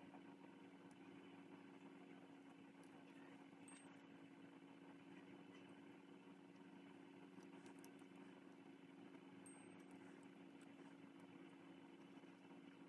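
Near silence: faint, steady room tone with a low hum.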